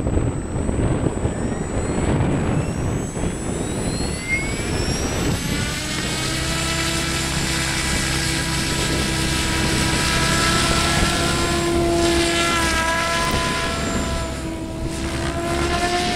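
SAB Goblin 700 radio-controlled helicopter spooling up and flying. A rising whine climbs over the first five seconds. It then settles into a steady whine with several pitches that waver slightly as the helicopter lifts off and climbs away.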